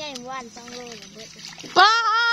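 People talking, then a loud, high-pitched call from one voice near the end. Faint splashing of water runs underneath.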